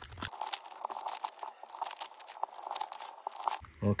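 A Topps Garbage Pail Kids Chrome trading-card pack wrapper being torn open and crinkled in the hands: a dense, irregular crackling that lasts about three seconds and stops just before a word is spoken.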